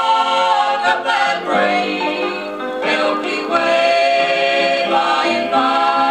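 Southern gospel vocal group singing in harmony, played from a 1969 vinyl LP on a turntable.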